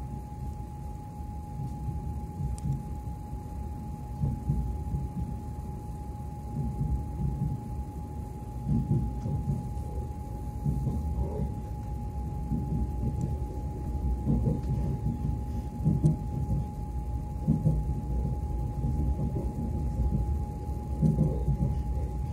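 Low running rumble of an electric commuter train heard from inside the carriage while under way, rising and falling with louder spells now and then. A thin, steady high hum runs under it.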